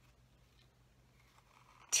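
Very quiet, faint snipping of small scissors cutting through cardstock.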